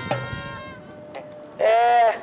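A person's voice held on one loud, long note near the end, sung or called out, after a fainter held tone that fades away.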